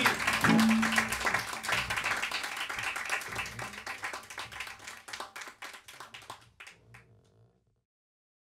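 Small audience applauding, the clapping thinning out and fading away to silence over about seven seconds, with a brief held tone near the start.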